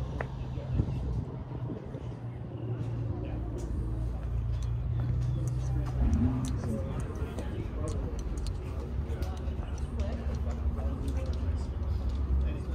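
People talking nearby, unclear words, over a steady low hum.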